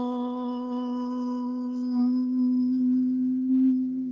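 A voice holding one long intoned note at a steady pitch, cut off abruptly at the end, with a fainter, lower tone coming in about halfway through.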